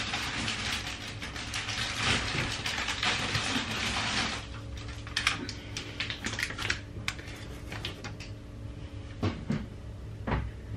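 Items being handled in a kitchen cupboard: plastic packets rustle and crinkle for about the first four seconds, then scattered clicks and knocks as things are moved and put down.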